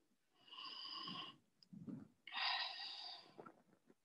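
A woman's audible breaths: a softer one about half a second in, then a louder, longer one a little past the two-second mark, taken while shifting between yoga poses.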